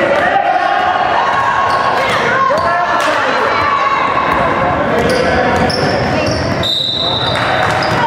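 A basketball dribbled on a hardwood gym floor amid spectators' shouting voices. A referee's whistle blows once for nearly a second near the end, calling a foul that leads to free throws.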